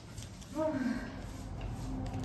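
A woman sighing aloud: a single voiced sigh about half a second in, the sigh of someone who has eaten her fill.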